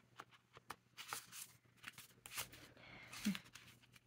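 Paper ink swatch cards being handled and flipped: faint, scattered rustles and light taps.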